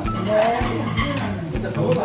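Upbeat banjo background music with a steady beat, about two beats a second.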